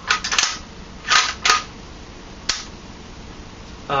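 Metal bolt of a KJW M700 gas bolt-action airsoft rifle being worked by hand: a few short clacks in the first second and a half, then a single sharp click about two and a half seconds in.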